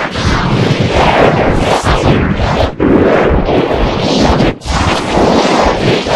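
Loud, heavily distorted noise from an effects-processed edit, with no clear tune or words, broken by two brief drops about two-thirds of a second apart near the middle and later in.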